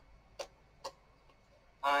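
Three short, soft clicks about half a second apart, then a man's voice begins near the end.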